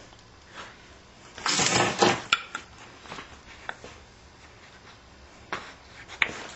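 Antler and bone flintknapping tools being handled and shifted over a leather pad: a brief scraping rustle about one and a half seconds in, then a few light clicks and knocks.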